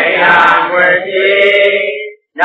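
Buddhist devotional chanting by several voices in unison, settling into a long held note in the second half.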